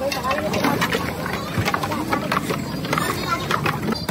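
Irregular metallic clinks and knocks of a steel ladle against a steel pot as rose syrup is ladled over ice into milk, with voices chattering in the background.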